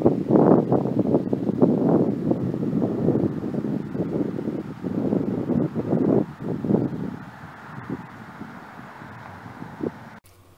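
Wind buffeting the phone's microphone in irregular gusts, loud at first and dying down over the last few seconds.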